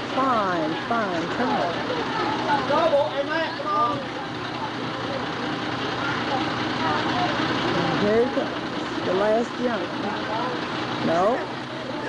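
Overlapping children's voices chattering and calling out, with a school bus engine idling steadily underneath.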